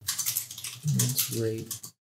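Typing on a computer keyboard: a quick run of key clicks. A man's voice speaks over the second half.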